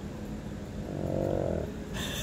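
Alaskan malamute 'talking': a low, grainy grumbling vocalisation of about a second, starting a little under a second in, given in reply to being spoken to.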